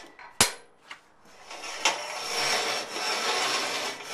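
A sharp metal clank about half a second in, then steel tubing sliding and scraping against the steel vise of a metal-cutting band saw as the rocker is pushed through to its next cut mark.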